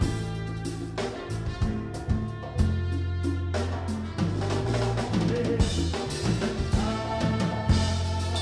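Live Cuban band playing, the drum kit prominent over electric bass, keyboard and a trumpet-and-trombone horn section, with frequent snare and rimshot hits.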